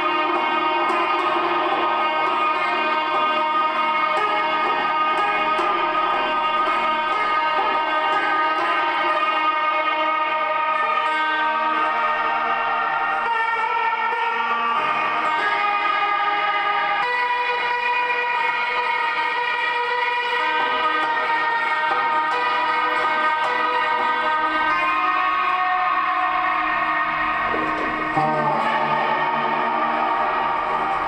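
Lap steel guitar played through effects pedals and an amplifier: a dense, sustained drone of many overlapping held tones, shifting to new pitches a few times.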